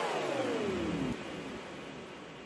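The end of an electronic dance track: a falling synth pitch sweep glides steadily down and cuts off about a second in, leaving a faint hiss that fades away.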